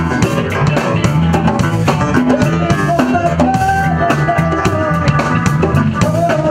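A live rock band playing: drum kit and congas keep a steady beat under electric guitar and bass, and held melody notes come in about halfway through.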